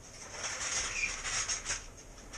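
Rustling and shuffling as a person moves about and handles things close to the microphone, with a few faint ticks and one brief faint squeak about halfway through.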